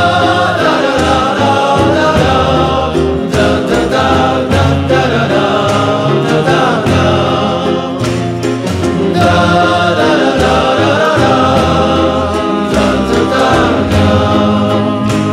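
Psychedelic pop song: layered singing over an instrumental backing with a steady beat.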